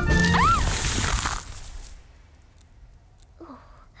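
Cartoon sound effect of a load of snow falling off a branch: a loud rushing whoosh over orchestral music, with a couple of short rising-and-falling glides, dying away within about two seconds.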